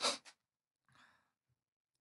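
A short, audible breath from a man right at the start, then a much fainter breathy hiss about a second in, with near silence around them.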